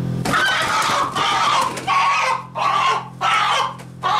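Barred Rock rooster squawking in alarm as it is caught and held upside down by its legs: a run of loud, harsh squawks, about four or five in a row, starting just after the beginning.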